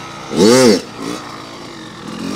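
Kawasaki KX100 two-stroke dirt bike engine given a sharp throttle blip about half a second in, its pitch rising and falling quickly, then dropping back to a lower running note.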